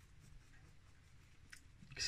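Faint scratching of a nearly dry paintbrush being flicked across the textured stones of a Dwarven Forge cavern tile in a dry-brushing stroke, with one small click about one and a half seconds in.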